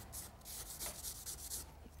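Charcoal rubbed across charcoal-covered drawing paper in a few faint, scratchy strokes, as dark lines are drawn back into an erased drawing.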